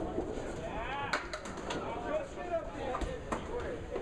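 Candlepin bowling alley: a cluster of sharp knocks and clatter about a second in and a few more around three seconds, ball and pins striking, over a murmur of background voices.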